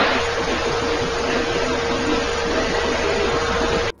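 Steady static-like noise with a steady hum under it, cutting in and ending abruptly.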